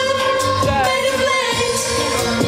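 Live female vocalist singing a Dutch-language pop song into a handheld microphone over pop music with a steady beat, holding one long note through most of the stretch.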